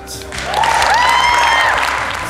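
Audience applauding, swelling about half a second in after an award winner is named. A long, high-pitched cheer rises over the clapping for about a second.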